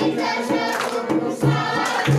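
A group of voices singing a Hindu devotional song together, with a sharp, roughly regular beat under it about twice a second.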